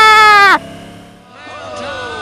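A man's voice holding a long, loud, high note that wavers in pitch, cut off abruptly about half a second in. A much quieter stretch with a short laugh follows.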